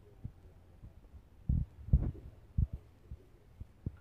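A handful of dull, low thumps and knocks from handling, the loudest about one and a half and two seconds in, with smaller ones near the end.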